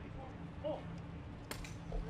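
People's voices speaking a few brief words outdoors over a steady low hum, with one sharp click about one and a half seconds in.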